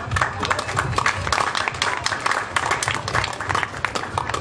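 Audience applause: many hand claps break out suddenly and keep going.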